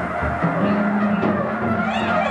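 Live jazz from a quartet of soprano saxophone, trumpet, electric guitar and drum kit playing together, with a held low note through the middle.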